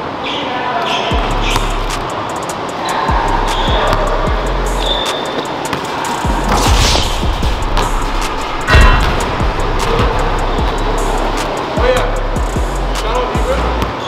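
Basketball bouncing on a hardwood gym floor, a string of sharp knocks with the loudest about nine seconds in, under background music with a deep bass line.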